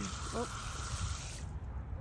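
A fine shower of water spraying onto wet soil, cutting off suddenly about one and a half seconds in.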